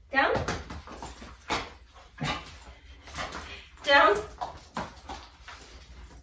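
A Sheepdoodle puppy moving about on a leash, making a run of short taps and clicks between two spoken commands, as it gets up from a sit instead of lying down.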